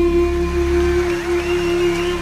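Greek folk clarinet (klarino) holding one long, steady note over a low accompaniment, with a higher line sliding up and back down about halfway through.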